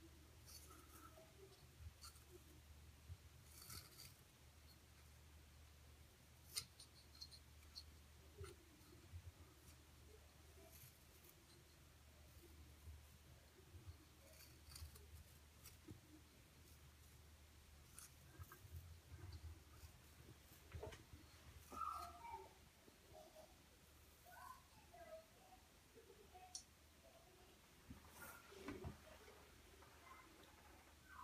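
Faint, intermittent scraping and light clicks of a small handheld pencil sharpener shaving a cosmetic eyebrow pencil, with near silence between the strokes.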